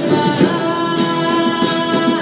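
A man singing while strumming a steel-string acoustic guitar in a steady rhythm, about three strokes a second, in a concrete sewer tunnel.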